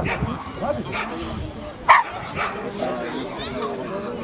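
A dog barks once, short and sharp, about two seconds in.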